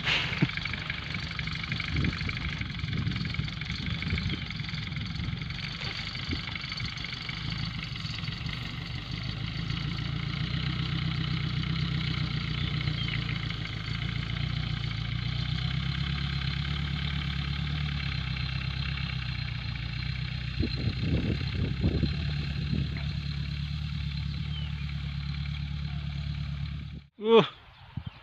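Engine of a homemade tractor-based sugarcane sprayer running steadily as the machine drives across the field, with the sound stopping abruptly near the end.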